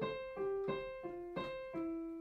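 Piano playing a single-note right-hand melody: about six evenly struck notes, roughly three a second, each fading after it is struck, with the last note held.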